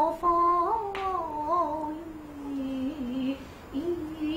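A female Kunqu opera singer sings one slow, drawn-out melismatic line with a wavering vibrato. The pitch sinks gradually through the middle of the line, breaks off briefly near the end, and then the note picks up again.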